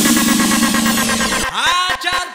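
Electronic breakbeat remix music building up, with a fast drum roll under a rising sweep. About one and a half seconds in, the bass drops out and synth tones bend in pitch as the track breaks.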